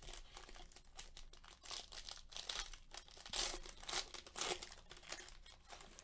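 Foil wrapper of a Panini Donruss basketball card pack crinkling and tearing in the hands as it is opened and the cards are slid out. The crackles come in irregular bursts, loudest through the middle seconds.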